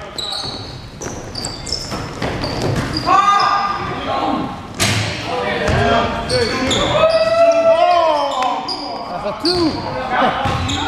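Basketball game on a gym court: the ball bouncing on the floor and sneakers squeaking in short chirps, with players' shouts, loudest about three seconds in and again around seven to eight seconds. All of it echoes in the large hall.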